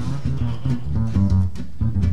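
Upright double bass plucking a steady line of low notes, with electric jazz guitar playing along softly, as a live small-group vamp.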